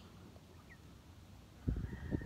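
Faint peeping of broiler meat chickens, with a single short chirp about two-thirds of a second in. A low rumbling noise comes in near the end.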